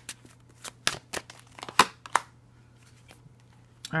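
Tarot cards from a Spirit Song Tarot deck being shuffled and drawn by hand: a quick run of short, crisp card snaps and flicks, the loudest a little before two seconds in.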